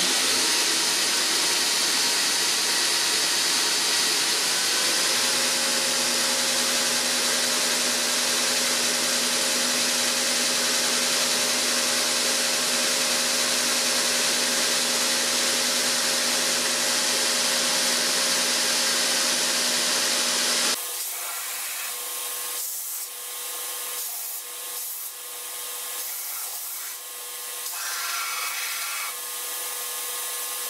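Black Fox ONE 2x72 belt grinder running with a piece of scrap steel pushed against the belt: a loud, steady grinding rasp. About two-thirds of the way through it drops abruptly to a quieter, uneven sound.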